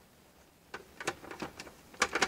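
Clear plastic food dehydrator trays knocking and clicking against each other as they are lifted off and set back on the stack: a few light clicks starting just under a second in.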